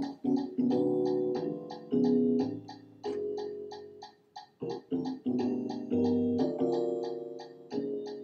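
Computer playback of a vocal jazz chart's intro from music notation software: sustained synthesized chords for the vocal parts that change every second or so, over a bass line, with a steady fast ticking throughout.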